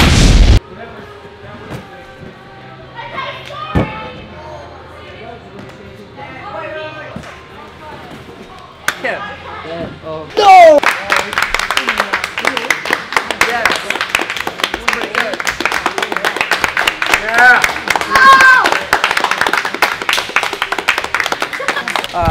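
One very loud hand clap at the very start, heard as a short blast. From about ten seconds in, a small group claps fast and steadily amid shouting and cheering voices.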